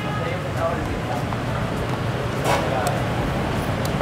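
Steady street traffic noise with faint background voices, and one brief breathy rush of noise about two and a half seconds in.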